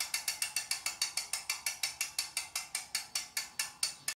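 Bicycle rear hub freewheel clicking, its pawls ticking quickly and evenly at about seven clicks a second.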